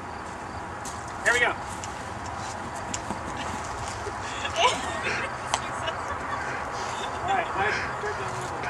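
Onlookers' voices calling out briefly three times, about a second in, near the middle and near the end, with a few sharp knocks between.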